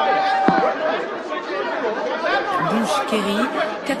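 Several voices talking over one another in unintelligible chatter, with a steady beep-like tone in the first moment and a single click about half a second in. One clearer voice comes in near the end.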